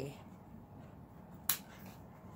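A single sharp snip from a pair of scissors about one and a half seconds in, the blades closing on ribbon.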